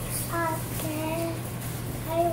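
A child's voice singing a few short held notes, with a steady low hum underneath.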